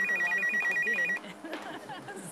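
An electronic telephone ringer trilling, a rapid warble between two high tones, which stops abruptly about a second in.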